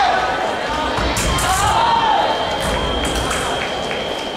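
Fencing hall ambience: a mix of voices and calls across the hall, with some sharp clicks about a second in. A steady high electronic tone starts about a second in and holds, typical of a fencing scoring machine signalling a touch.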